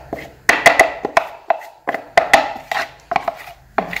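Metal spoon clinking against a glass mixing bowl as flour is knocked out of a plastic bag: an irregular run of sharp clinks, a few each second.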